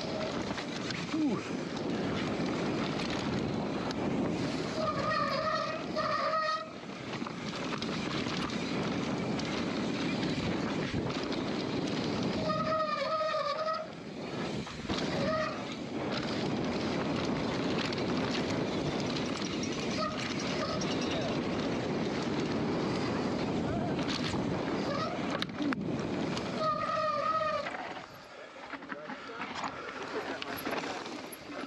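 Mountain bike descending a dirt trail at speed: a steady rush of tyre and wind noise. A short wavering whine, with a fainter tone above it, cuts in three times.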